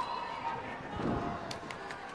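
Arena crowd noise in a large hall: many spectators' voices blending together, with a few short sharp sounds like claps in the second half.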